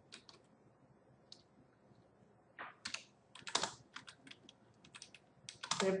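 Computer keyboard keys being pressed: a few scattered keystrokes, then a quicker run of taps over the second half.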